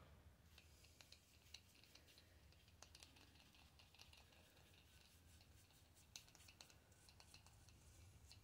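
Near silence, with faint scratchy ticks of a paintbrush being dabbed and stroked on the painted concrete statue.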